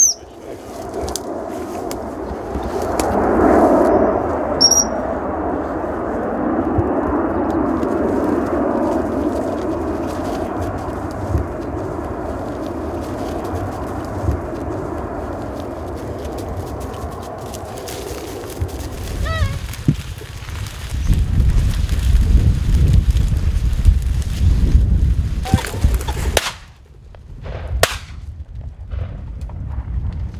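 A handler's gundog whistle gives one short, high pip about five seconds in. Around it is steady outdoor rustle, and wind buffets the microphone with a low rumble from about twenty seconds in.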